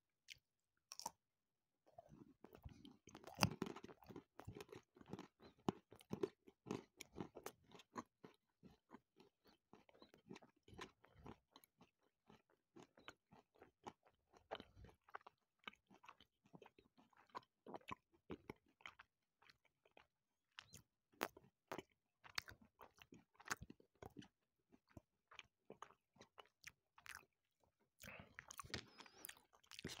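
Close-miked chewing of a bite of milk chocolate with whole hazelnuts and almonds: a long run of small, irregular crunches as the nuts break between the teeth. The crunches are loudest a few seconds in and thin out toward the end.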